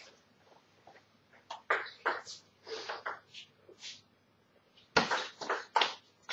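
Short clicks and knocks of a table tennis ball being bounced and handled between points, in a small hall, with a cluster of louder knocks near the end.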